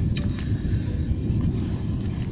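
Steady low rumble of wind on the microphone, with a few faint clicks and rustles of gear being handled in a backpack shortly after the start.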